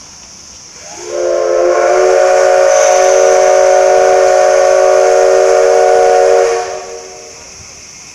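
Steam whistle of the JNR class C62 steam locomotive C62 2. It gives one long, steady blast of about six seconds, several tones sounding together, beginning about a second in and dying away near the end.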